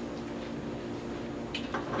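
Steady low hum, with a short light clatter of a metal fork being set down on the kitchen counter about one and a half seconds in.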